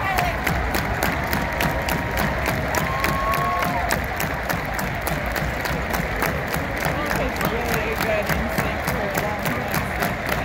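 Large stadium crowd cheering and applauding, over a steady quick beat of sharp taps, about four or five a second.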